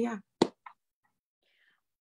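A woman says "yeah" over a video call, followed by a brief click and a faint breathy sound.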